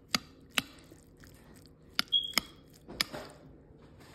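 A metal spoon clinking and scraping against a plate while scooping rice: about five sharp clicks, one near the middle followed by a brief high ringing tone.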